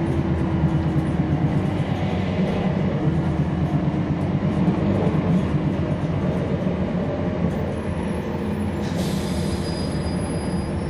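The Cummins ISL9 inline-six diesel of a NABI 40-SFW transit bus, running under way and heard from on board. It is a steady low drone with the cabin rattling throughout, easing slightly in the last few seconds. About nine seconds in there is a short high-pitched squeal and hiss.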